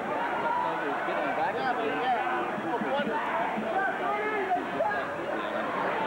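Crowd of spectators in a gymnasium: a steady babble of many voices talking and calling out at once.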